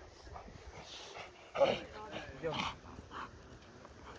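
A dog gives two short, loud barks, about a second and a half in and again a second later, amid faint voices.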